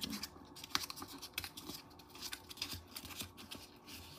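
Construction paper being rolled up by hand around a wooden craft stick, rustling and crackling in many small, irregular clicks.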